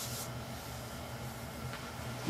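Quiet room tone: a steady hiss with a faint low hum underneath.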